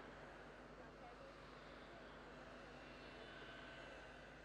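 Near silence: faint steady background hum and hiss, with no distinct event.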